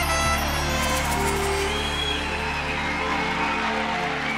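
A live acoustic band with guitars and percussion plays the closing notes of a song, the final chord ringing on, while an audience begins to cheer.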